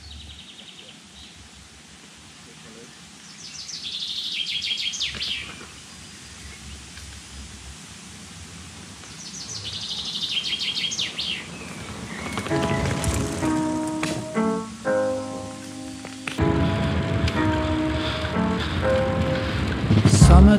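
Outdoor background noise with a songbird singing two short, rapid trilling phrases, about four seconds in and again about ten seconds in. From about twelve seconds a music track with held instrumental notes comes in and gets louder.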